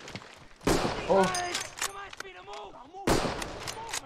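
Two loud artillery shell explosions in a war drama's soundtrack, one under a second in and another about three seconds in, each sudden with a rumbling tail, with voices in between.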